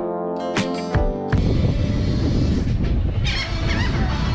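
Strummed acoustic guitar music that cuts off abruptly about a second in. It gives way to a loud low rumble of wind on the microphone outdoors, with a few high gull cries near the end.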